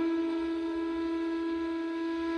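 Flute holding one long steady note in background music, without any change in pitch.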